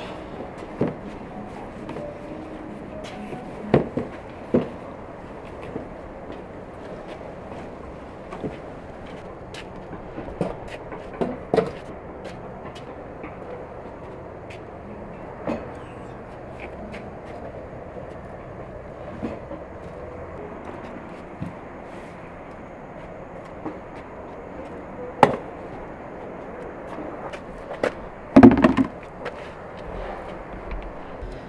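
Steady outdoor background noise with scattered sharp knocks and clatters, like things being set down or handled during yard work; the loudest are a single knock near the end and a quick cluster of knocks just before the end.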